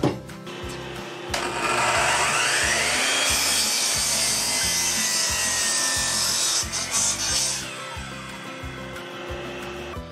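Sliding compound miter saw starting up with a rising whine about a second in, then its blade cutting through a pressure-treated 4x4 post for several seconds. Past the middle the cut ends and the sound drops away. Background music with a steady beat plays throughout.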